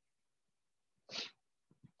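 Near silence, broken about a second in by one short, sharp breath noise from a person, like a quick sniff or stifled sneeze.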